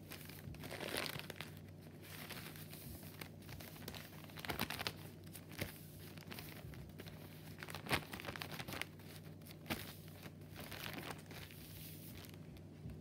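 Paper coffee filter being folded and creased by hand: intermittent crinkling and rustling of thin paper, with a sharper crackle about eight seconds in.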